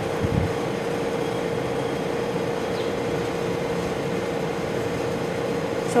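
Steady background hum and hiss of room noise, with a soft low thump just after the start.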